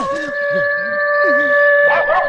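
Background music: one long, steady held note, like a synthesizer or wind instrument, over lower wavering tones.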